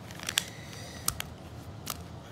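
A few light clicks and taps from a Ruger LCP II pocket pistol being picked up and handled on carpet: a quick pair, then single clicks about a second in and near the end.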